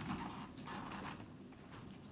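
A few faint taps and knocks over quiet room noise.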